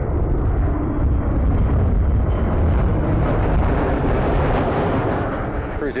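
Boeing 737 air tanker's jet engines making a loud, steady roar on a low pass as it drops fire retardant. The sound swells slightly in the first couple of seconds and eases a little near the end.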